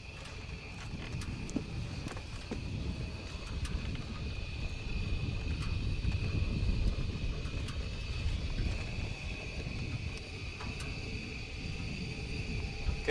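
Low wind rumble and handling noise on a camcorder microphone, swelling toward the middle, over a faint steady high tone, with a few scattered clicks.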